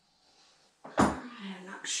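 A single sharp knock about a second in, followed by a woman starting to speak.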